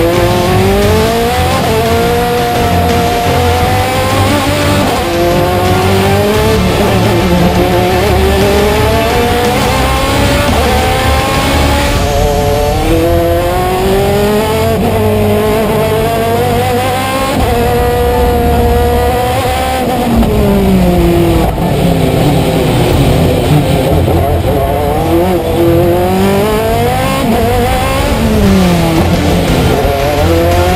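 Osella FA30 hillclimb prototype's Zytek V8 racing engine, heard onboard under full power. It revs up hard through the gears with quick upshifts, its pitch dropping at each change and climbing again. Several times the revs fall and rise through downshifts into bends.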